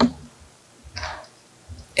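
A sharp click, then a few faint footsteps on a wooden floor and a short rustle about a second in.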